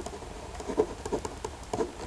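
Pen scratching on paper in short, irregular strokes as a word is written by hand.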